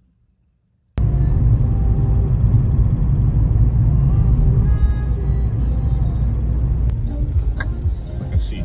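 Near silence, then about a second in a sudden cut to loud, steady low road rumble heard inside a moving car, with music playing faintly under it.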